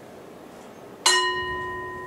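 A bell struck once about a second in, ringing on with several clear steady tones that slowly fade.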